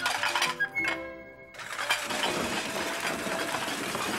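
A short run of cartoon music notes, then about a second and a half in an electric blender switches on suddenly and runs with a steady whirr.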